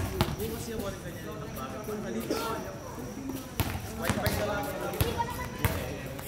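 A basketball bounced a few times on a hard outdoor court, the thuds coming at uneven intervals, over people talking in the background.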